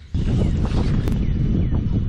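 Wind buffeting the microphone: a dense, steady rumble that starts suddenly a moment in.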